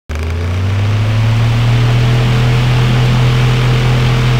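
Loud, steady low-pitched electronic drone over a hiss, a sound effect under a countdown-leader animation, with no ticks or beeps.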